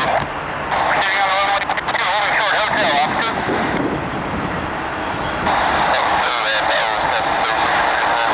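Air traffic control radio chatter heard over a scanner: a distorted, narrow-sounding voice coming and going in stretches over a steady hiss.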